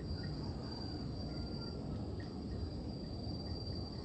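Insects trilling in one steady, high-pitched tone, over a low rumble, with a few faint short chirps.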